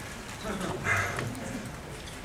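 A faint, brief bit of voice over hall room noise.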